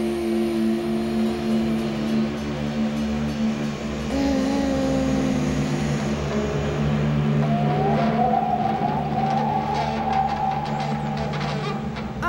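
Live rock band playing an instrumental stretch: electric guitar holding sustained, droning notes over a steady low drone. A long rising, wavering whine comes in about two-thirds of the way through.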